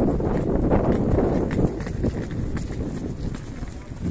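Footsteps of a group walking on a paved path, with indistinct voices and an uneven low rumble of wind on the microphone.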